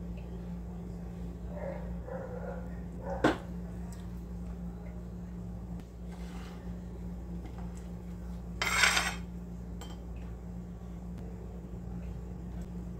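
Metal knife and cake server knocking and scraping on a ceramic plate as a cheesecake is cut and a slice lifted: one sharp clink about three seconds in and a short scrape near nine seconds, over a steady low hum.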